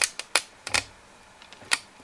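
Irregular sharp clicks and taps, about six in two seconds, from a corroded iron flintlock lock being handled.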